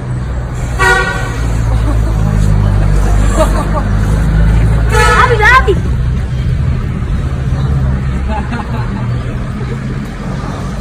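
A vehicle engine runs close by with a steady low rumble, and a car horn gives one short toot about a second in. Around five seconds in a voice calls out, rising in pitch.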